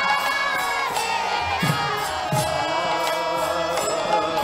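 Devotional kirtan: a large crowd chanting together in long sung phrases over harmoniums, with low mridanga drum strokes and bright metallic strikes.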